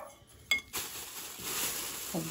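A metal spoon clinks once against a glass mixing bowl of chopped nuts, with a short ring, followed by a soft, steady rustle.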